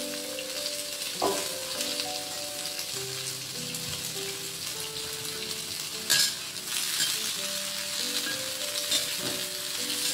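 Shrimp sizzling and frying in a stainless steel wok, a steady hiss throughout. A sharp clack comes about one second in, and a louder one about six seconds in, as the metal spatula strikes the wok.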